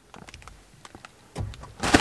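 Cardboard snack box being handled and turned close to the microphone: a few faint ticks, then a short rustling thump about one and a half seconds in.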